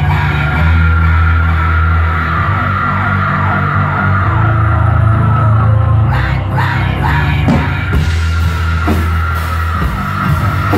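Live electronic rock intro played on a synthesizer keyboard: long, loud held bass notes with a steady high tone sustained above them, and a few sharp hits and sweeping accents about six seconds in.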